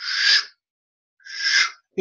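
Two breathy 'shh' swishes made with the mouth, a little over a second apart, imitating a bus's windshield wipers sweeping back and forth.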